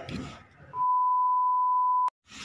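Test-card reference tone that accompanies television colour bars: a single steady, pure beep that starts under a second in and cuts off suddenly at the end. Before it, faint voice and handling sounds.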